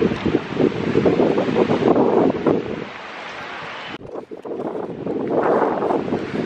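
Wind buffeting the camera microphone in irregular gusts, dipping briefly about four seconds in.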